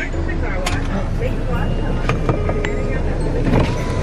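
Low, steady rumble of an SUV idling, heard from inside the cabin, with scattered clicks. A steady single tone sets in near the end.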